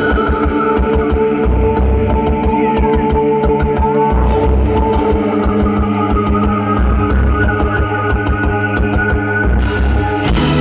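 Live gothic rock band playing an instrumental passage: electric guitar with held notes over a drum kit with a fast, driving bass drum beat. The band gets brighter and louder near the end.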